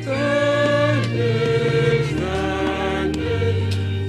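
A group of voices singing a slow hymn over sustained low accompaniment notes, moving to new held notes about a second and two seconds in.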